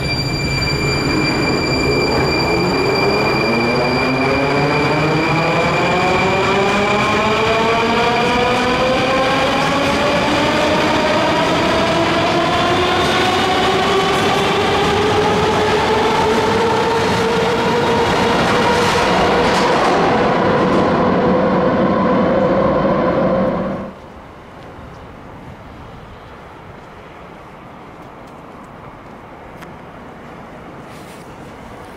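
Moscow Metro 81-740/741 train accelerating out of an underground station: its traction drive whine climbs steadily in pitch, several tones rising together over loud running noise. About six seconds before the end the sound cuts off abruptly to a much quieter, steady wind-like noise.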